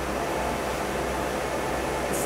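Steady background noise: an even hiss with a low, constant hum underneath.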